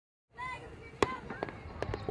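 Fireworks going off: a hiss with a faint whistle, then sharp bangs about a second in, again half a second later and just before the end, the first bang the loudest.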